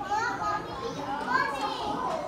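Children's voices: high-pitched children talking and chattering.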